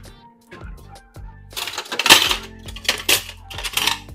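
Soft background music, then three loud rustling noise bursts in the second half, as of hands and clothing rubbing close to a clip-on microphone while hands are brought up over the face.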